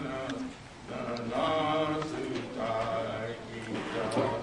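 Comanche-language hymn being sung in a chant-like style, in phrases of held notes with short breaks between them.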